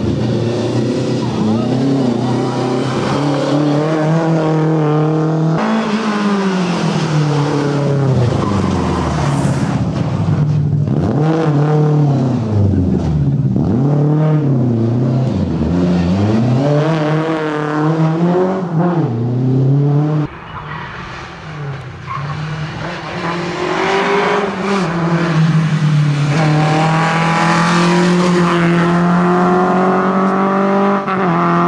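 Lada 2105 rally car's four-cylinder engine revving hard, its pitch repeatedly climbing and dropping through gear changes and lifts as it takes the corners. About twenty seconds in the sound cuts abruptly, and the engine then pulls with its pitch rising steadily.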